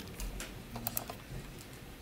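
Keys being pressed: a few light, irregular clicks, bunched in the first second.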